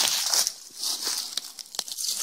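Dry fallen oak leaves crunching and crackling underfoot. The crunching is heaviest in the first half second, then thins to scattered crackles.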